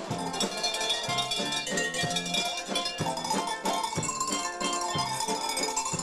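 A set of tuned cowbells struck one after another, playing a quick, rhythmic melody of ringing notes, with a low bass line underneath.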